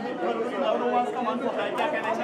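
Overlapping chatter of several people talking at once, with no single clear speaker.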